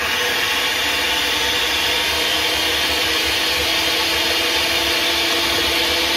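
Electric hand mixer running steadily at one speed, its beaters whisking a liquid batter mixture in a plastic bowl: an even motor whirr with a steady whine.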